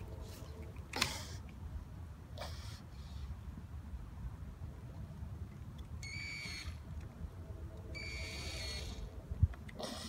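Toy power drill buzzing twice, a short steady high buzz about six seconds in and a longer one about eight seconds in. A sharp thump comes near the end.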